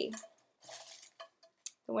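Slips of paper being rummaged and one drawn by hand from a container for a prize draw: a soft rustle, then a few light clicks and clinks.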